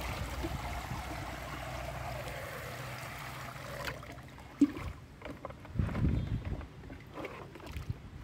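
Muddy water poured from a plastic jug through a metal sieve into a tub, running in a steady stream for about four seconds. Then one sharp knock, followed by water splashing as the jug is dipped back into a basin of water.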